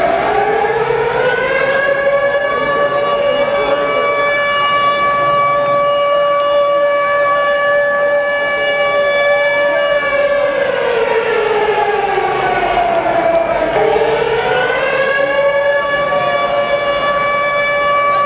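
Air-raid siren wailing through the concert PA as the band's walk-on intro: it rises and holds one steady pitch, sinks away about ten seconds in, then winds back up and holds again near the end.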